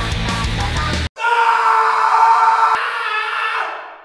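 Loud heavy metal music that cuts off abruptly about a second in, followed by a long, high wail held at one pitch that fades out near the end.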